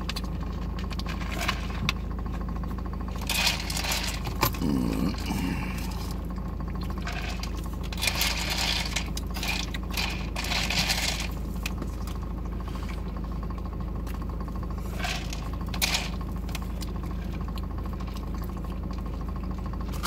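Steady low hum inside a car's cabin, with bursts of rustling, handling noise and chewing as food is eaten and a plastic soda bottle is handled.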